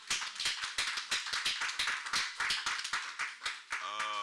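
Audience applauding, many hands clapping; the clapping stops near the end.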